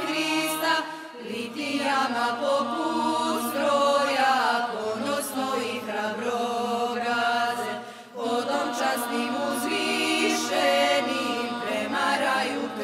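Music: a song sung in Serbian, voices carrying the melody over a steady low backing, with a brief dip between lines about eight seconds in.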